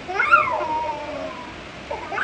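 A toddler crying: one wail that rises in pitch and then falls away over about a second, with the next cry starting near the end.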